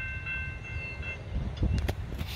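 Double-stack container freight train rumbling past at a distance, with a steady high-pitched ring over it that stops about a second in. A few short thumps come near the end.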